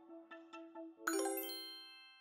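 A bright chime sound effect strikes about a second in and rings out, fading away, after faint ticking background music.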